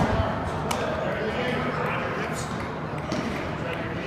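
A baseball landing in a leather glove with one sharp pop under a second in, over voices echoing in a large indoor hall.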